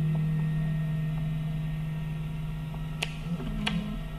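Acoustic guitar music pausing between phrases: a low held note rings on and slowly fades, with two short clicks about three seconds in.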